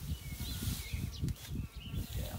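Irregular low thuds of footsteps and hooves moving over straw bedding, with a few faint bird chirps.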